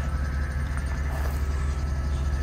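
Steady low hum of the van's idling 6.0-litre Vortec V8 gasoline engine, which runs the hydraulic PTO that powers the bucket boom.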